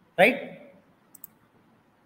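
Two quick, faint computer mouse clicks about a second in, close together.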